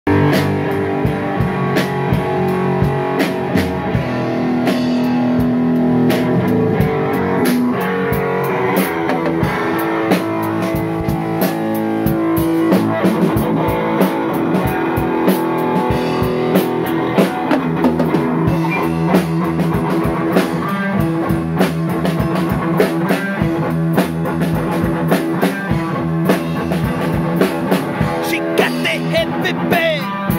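A rock band playing: a drum kit keeping a steady beat of hits and cymbal crashes under sustained guitar notes, loud throughout.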